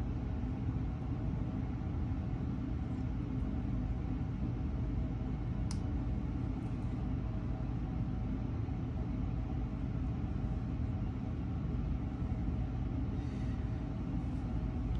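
Steady low background rumble with a faint hum, with one brief click about six seconds in.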